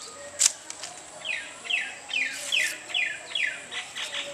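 A bird calling a run of about six quick falling chirps, roughly two a second, starting about a second in. Short dry scraping strokes, the loudest about half a second in, come from a blade stripping coconut-leaf midribs.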